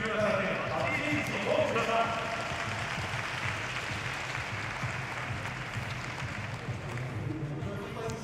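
Gymnastics arena ambience: a voice over the hall's public-address system for about the first two seconds, then a steady hiss of hall noise.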